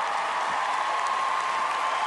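A large theatre audience applauding steadily.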